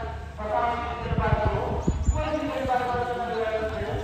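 Drawn-out men's voices calling across the ground, with a run of low thumps about a second in.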